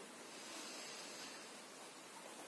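A woman's slow, faint in-breath, a soft hiss that swells a little in the first second and fades out before the end.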